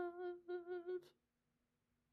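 A woman's voice holding a level, hum-like "mmm" of hesitation, in two held stretches with a brief break between them, stopping about a second in.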